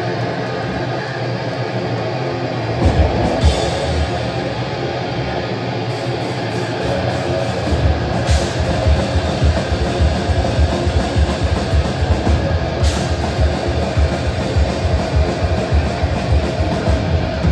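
Live heavy metal band playing loud: distorted electric guitars and bass, with the drums coming in about three seconds in on fast, driving kick drum beats and occasional cymbal crashes.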